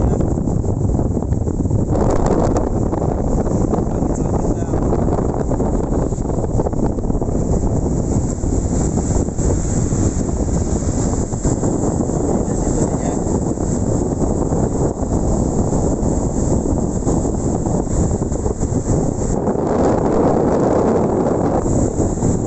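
Strong storm wind blowing across the microphone: a loud, steady rush of low noise with surf breaking on the shore beneath it.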